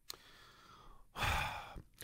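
A short pause, then a man's audible breath about a second in, lasting just over half a second.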